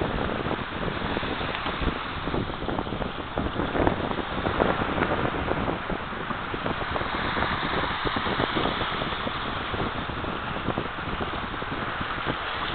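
Small sea waves washing onto a shallow sandy shore, with wind buffeting the microphone in an irregular low rumble throughout.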